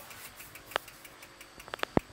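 Quiet handling of a carbon mountain-bike frame: a few sharp clicks, one under a second in, a quick pair near the end and a louder one right at the end, over a faint fast ticking.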